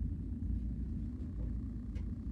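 Steady low background rumble of room noise with no speech, and a faint steady tone coming in about halfway through.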